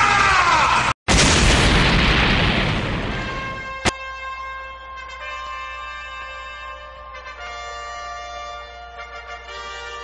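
Cartoon energy-blast sound effect: a falling zap, then after a brief break an explosion that fades away over about two seconds. A sharp click follows near the four-second mark, and sustained music chords take over for the rest.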